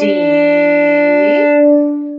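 Violin bowed on the open D string: one long, steady held note, the last note of a slurred G, F sharp, D phrase, with a woman's voice calling "D" along with it as it begins.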